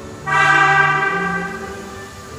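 Disney Resort Line monorail sounding its horn once as it pulls out: a single loud, chime-like tone that starts a moment in and fades away over about a second and a half.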